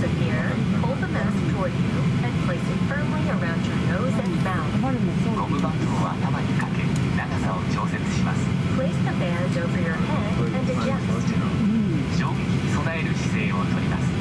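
Steady low cabin hum inside a Boeing 737-800 during pushback, with people's voices talking over it throughout.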